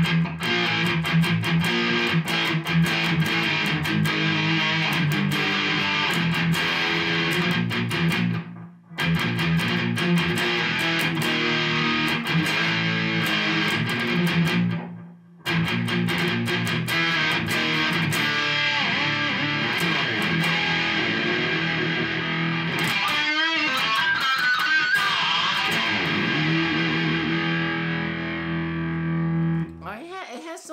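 Harley Benton ST20 HSS electric guitar played through a Behringer Ultra Metal distortion pedal: heavily distorted playing, with two brief breaks about 9 and 15 seconds in, dying away near the end.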